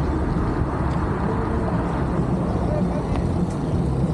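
Steady low rumble of riding an electric bike: wind on the microphone and tyre noise, with faint voices in the background.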